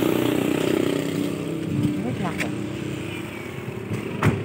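Road traffic: a passing motor vehicle's engine running steadily and fading as it moves away.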